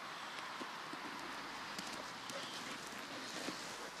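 Footsteps crunching in snow, with a scatter of short, light crunches through the second half.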